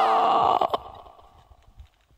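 End of a rock track: after the band cuts off, the last ringing chord slides down in pitch and fades out over about a second and a half. There is a sharp click partway through, and then it goes nearly silent.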